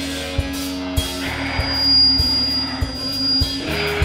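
Live rock band playing an instrumental passage: an electric guitar through a Marshall amp holds one long sustained note over a steady drum beat, with a kick or snare hit about every 0.6 s. The held note stops near the end and the band carries on.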